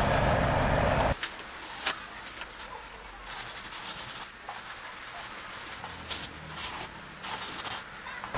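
A steady hiss for about the first second, then faint, irregular rubbing and scratching strokes of soft pastel being worked across paper by hand.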